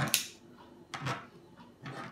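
Kitchen scissors snipping through raw chicken breast: three short, sharp cuts about a second apart.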